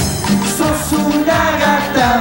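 Instrumental passage of a live cumbia song: a keyboard melody over a steady percussion beat, with low drum hits that drop in pitch.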